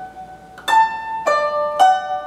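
Guzheng (Chinese zither) strings plucked slowly one at a time, a few notes about half a second apart, each ringing on: the opening phrase's finger pattern of thumb with middle finger, then index, then thumb.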